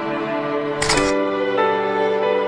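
Slow music with long held notes and a change of chord about one and a half seconds in. Just under a second in, a short camera shutter click sounds over the music.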